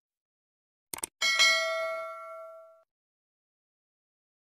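Animated subscribe-button sound effect: a quick double mouse click about a second in, then a bright notification-bell ding that rings out and fades away over about a second and a half.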